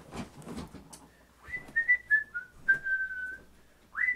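A person whistling a tune: a few short stepped notes, then one longer held note. Before the whistling begins there are a few knocks and rustles of movement.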